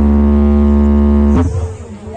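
A loud, steady low held note from the dance's musical accompaniment, cutting off abruptly about a second and a half in, after which the sound drops to a quieter mix.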